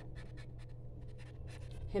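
Green felt-tip marker writing on paper held on a clipboard: a run of short, faint strokes with a brief pause in the middle, over a low steady hum.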